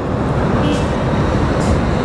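Road traffic noise from a busy street: a steady, even rumble and hiss of passing vehicles.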